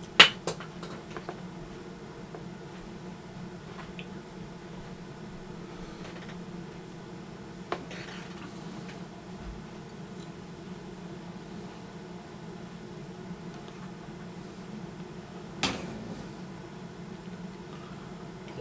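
Small handling clicks from fly-tying work at a vise: a few isolated ticks, about a second in, near eight seconds and near sixteen seconds, over a steady low hum.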